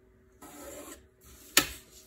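Pencil drawn along the edge of a plastic ruler on paper, one scratchy stroke lasting about half a second. Near the end there is a single sharp knock as the ruler is moved and set down on the drawing board.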